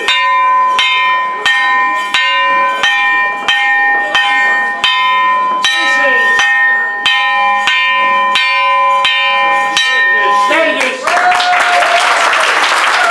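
A metal plate hung on chains is struck with a mallet in a steady series, about one strike every 0.7 seconds, each strike ringing on into the next with several clear tones. About ten and a half seconds in the striking stops and the audience applauds.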